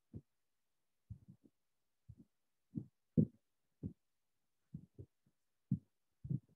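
Faint, irregular low thumps, about one or two a second, with silence between them.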